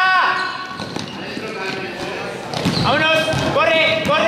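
Basketball game sounds in an echoing sports hall: high-pitched voices shouting and cheering, loudest at the very start and again from about two and a half seconds in, over the ball bouncing on the court.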